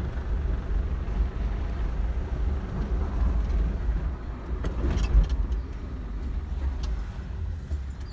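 Mahindra Quanto's diesel engine and tyres heard from inside the cabin while driving: a steady low rumble, with a few clicks about halfway through. The clutch plate has just been replaced, and the clutch is said to be smooth.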